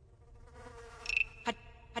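Sparse contemporary music for percussion and electronics: a faint buzzing electronic texture with whispered-voice fragments from the tape part. Two short sharp strokes come about a second and a half in and again at the end.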